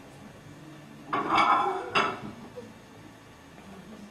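A dish bowl being taken out of a microwave: a short scrape and rattle about a second in, then a single sharp clink.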